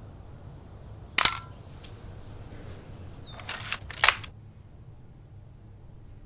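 Manual film SLR camera: a sharp shutter click about a second in, then a short ratcheting film-advance wind and another sharp click around four seconds in.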